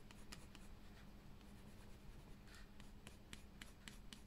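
Faint scratching of a colored pencil on paper in quick, short strokes while shading.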